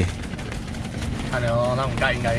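A short voiced sound from a person about one and a half seconds in, over a steady low hum and many faint clicks.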